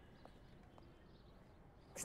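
Near silence: low room tone with two faint taps about half a second apart in the first second.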